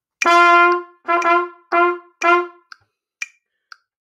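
Trumpet playing four notes on the same pitch: the first held for most of a second, then three shorter notes about half a second apart, followed by a pause with a few faint clicks.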